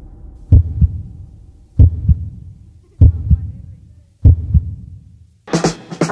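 Heartbeat sound effect played over a theatre sound system: four slow, deep double beats, lub-dub, about a second and a quarter apart. Loud synth-funk music comes in near the end.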